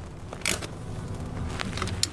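A hand tool working the thermostat housing bolts on a 5.7L Hemi: one sharp metallic click about half a second in and a few fainter clicks, over a low steady hum.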